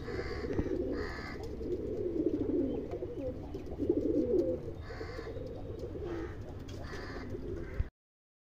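Domestic pigeon cooing again and again, a low warbling coo, with a few short higher-pitched sounds between the coos. It stops abruptly just before the end.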